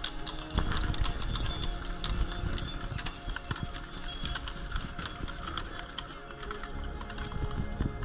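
Clip-clop of two horses' hooves on snow-dusted cobblestones as a horse-drawn carriage passes, over music and voices.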